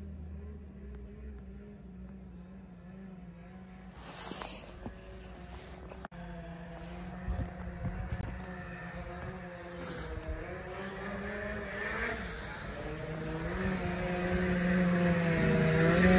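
Snowmobile engine drone drawing nearer, growing steadily louder through the second half, with the pitch rising near the end as the sled approaches.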